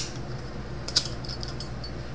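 Metal Zippo-style lighter clicking in the hand during a flip-open lighting trick: a sharp click at the start, then another sharp click about a second in followed by a short run of small metallic ticks.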